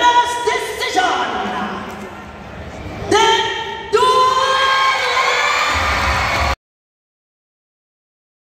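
A voice over the arena PA making long, drawn-out calls, the way a ring announcer stretches out a result, over crowd cheering. The sound cuts off abruptly about six and a half seconds in.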